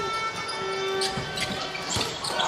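Basketball game sound in an arena: crowd noise with a few held tones and two sharp knocks about a second apart.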